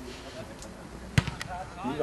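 Football struck by a kick: one sharp thud just past halfway, with a lighter knock right after, over faint players' voices.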